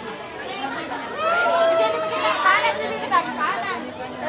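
Young people's voices chattering, with one voice drawn out in a long call from about a second in.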